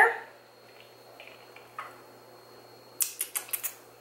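A quick run of sharp clinks and clicks about three seconds in: ice cubes knocking against a glass mason jar of iced coffee as a plastic straw stirs it.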